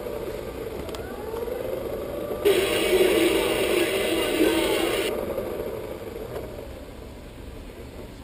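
Small built-in speaker of a WWE Electrovision Championship Belt toy playing its demo entrance-music clip, thin and tinny. It gets louder and brighter about two and a half seconds in, then fades toward the end.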